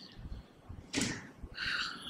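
A man's breathing close to a microphone: a short sharp breath about a second in, then a half-second breath drawn through the mouth.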